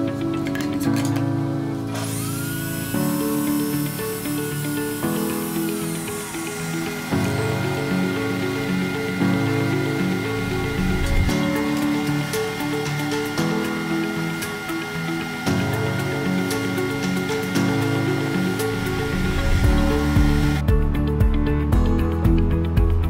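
Background music over a table saw running and cutting. The saw's whine rises at its start about two seconds in, runs steadily, and stops shortly before the end.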